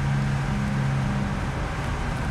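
Steady road-traffic noise, with a low, even engine hum that stops after about a second and a half.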